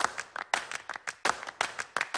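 A rapid, irregular run of sharp clicks, about six a second, a sound effect laid over an animated end screen.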